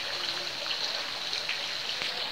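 Steady outdoor background hiss with a thin, continuous high tone running through it; no distinct event stands out.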